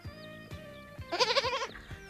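A goat bleating once, a short wavering bleat about a second in, over light background music.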